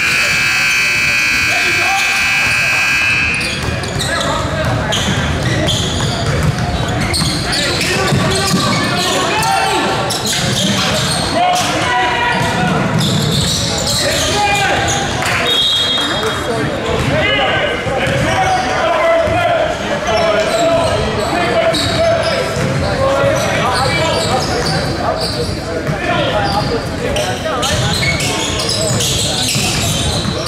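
Indoor basketball game in an echoing gym: a ball bouncing on the hardwood, players' shoes and voices, and crowd chatter. A scoreboard buzzer sounds for about three seconds at the start, and a brief high squeal comes about halfway.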